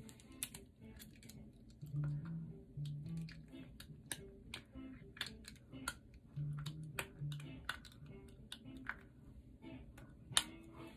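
Clear plastic aligner trays being pressed and snapped onto the teeth with the fingers and long nails: a run of small sharp clicks, irregular and quick, with a few faint low hums in between.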